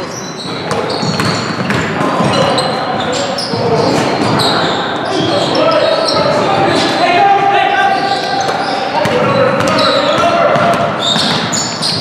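A basketball bouncing on a hardwood gym floor during play: repeated sharp dribble knocks, with players' voices calling out and echoing in the large hall.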